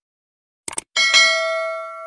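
Subscribe-button sound effect: two quick mouse clicks, then a notification bell dings about a second in and rings out, fading slowly.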